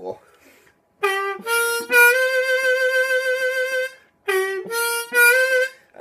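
B flat diatonic harmonica playing a three-note phrase twice: draw 3 bent down (its second bend), blow 4, then draw 4 scooped up from slightly below its pitch. The first time the draw 4 is held for about two seconds; the second time it is cut short.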